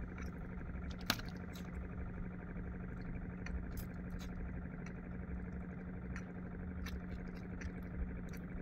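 A steady low hum, with scattered light clicks and knocks from fishing line and gear being handled in a wooden outrigger boat; one sharper click about a second in.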